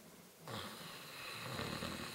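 A person breathing in slowly and deeply with a deliberate snoring sound in the throat, the inhale of Bhramari (humming bee breath) pranayama. It begins about half a second in and is still going at the end.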